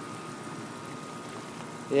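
Steady faint hiss of water running through a home-made PVC drip irrigation line fed from a garden hose, with a thin steady high tone underneath.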